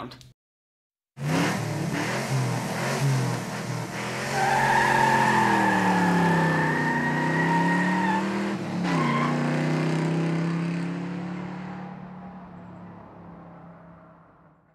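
Car engine revving, its pitch rising and falling, starting about a second in. A high, steady squeal is held for about four seconds in the middle, and the whole sound fades away near the end.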